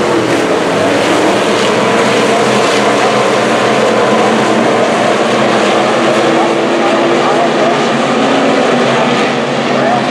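A field of USRA Stock Cars with V8 engines, racing together on a dirt oval. The engines run loud and steady at race speed, many overlapping tones blending into one continuous sound, with single engines rising and falling in pitch near the end.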